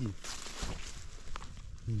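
Rustling of low forest undergrowth and clothing as a person moves and reaches through blueberry shrubs and dead branches, loudest in the first half-second. A single short click or snap comes about halfway through.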